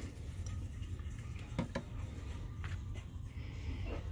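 A few light clinks and knocks of a glass snow globe being handled and set back on a glass store shelf, two of them close together about a second and a half in, over a low steady background hum.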